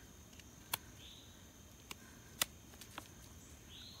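Knife blade scraping and nicking at a small wet chunk of pine fatwood: a few faint scrapes and short sharp clicks, the loudest about two and a half seconds in.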